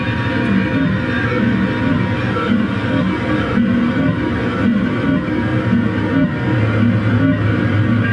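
Electric basses played through effects pedals in a loud, dense experimental noise jam, low notes shifting continuously under a distorted haze; a low note is held steady near the end.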